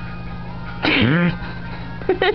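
Background music playing, with one short loud burst about a second in: a noisy, sneeze-like exhale with a voice sliding down and back up in pitch.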